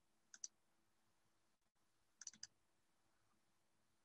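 Near silence with a few faint clicks at a computer, such as a mouse or keyboard: a quick pair near the start and three more a little after two seconds in.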